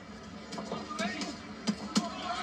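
Boxing broadcast audio played through a TV speaker: arena crowd noise under the commentators' voices, with two sharp knocks close together near the end.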